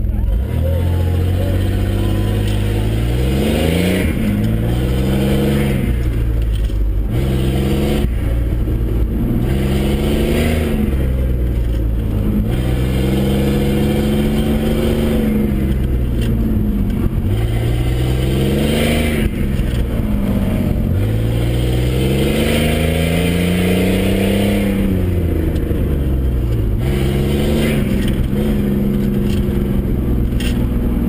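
GMC Syclone's turbocharged V6, heard from inside the cab on an autocross run. The engine revs up and falls back again and again, every couple of seconds, as the truck accelerates and lifts between cones.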